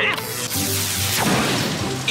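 Cartoon sound effect of a rain cloud forming with lightning: a loud rushing whoosh, then a crash with a falling sweep about a second and a half in, over background music.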